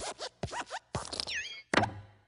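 Cartoon sound effects of the Pixar logo's hopping desk lamp: a quick run of springy thumps and squeaky creaks as it bounces on the letter I, with a falling squeak a little past a second in and the loudest thump near the end as the I is squashed flat.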